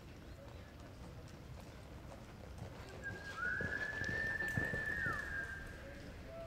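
Hoofbeats of a reining horse galloping on arena dirt, a few heavy thumps in the second half. From about halfway through, a long, steady, high human whistle rises in, holds and drops away near the end.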